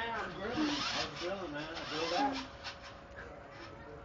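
A person's voice making soft, drawn-out vocal sounds for about the first two and a half seconds, then a faint steady hum.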